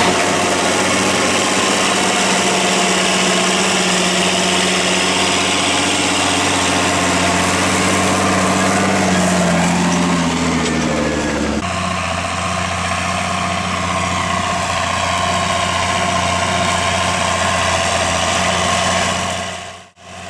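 McCormick MTX140 tractor's diesel engine running steadily under load while pulling a plough, its pitch rising slightly about nine seconds in. The sound changes abruptly just past halfway, then fades out near the end.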